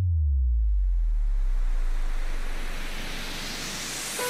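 Break in an electronic future bass track: a deep bass note slides down in pitch and fades away under a soft hiss of filtered noise, with the beat dropped out.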